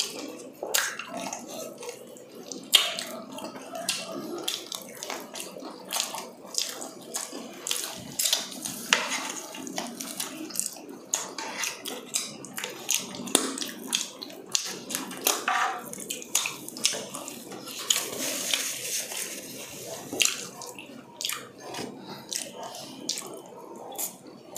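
Close-up eating sounds from two people eating fried chicken and spaghetti: chewing with many short crunches and wet mouth noises.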